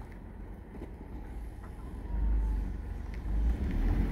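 2007 Ford Focus's four-cylinder engine running as the car moves slowly over gravel, heard as a low rumble that grows louder about halfway through.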